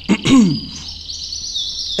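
A bird sings a continuous run of high, rapidly repeated chirps and trills in the background. There is a brief sound from a man's voice just after the start.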